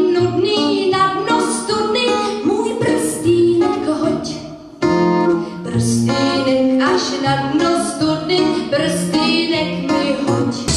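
A woman singing a pop song into a microphone over instrumental backing, with a brief drop a little before halfway before the next phrase comes in loud.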